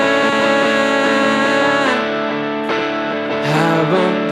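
Live rock band playing an instrumental stretch between vocal lines: sustained, distorted electric guitar chords over bass, changing chord about halfway through.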